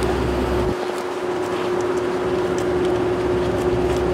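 A steady machine hum holding one constant tone over a noisy hiss, with a few faint clicks. The low rumble under it drops away about three-quarters of a second in and comes back near the end.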